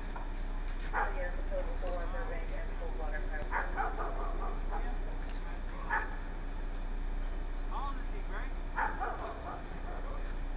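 A dog barking on and off, over indistinct voices and a steady low hum.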